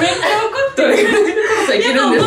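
Several young women laughing and chuckling together, mixed with bits of talk.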